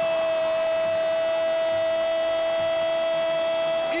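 TV football commentator's long drawn-out 'gol' shout, held on one steady pitch for about four seconds, calling a goal just scored.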